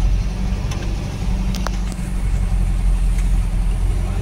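Vehicle engine running with a steady low rumble, heard from inside the cab as the vehicle moves slowly and turns. There is a faint short click about one and a half seconds in.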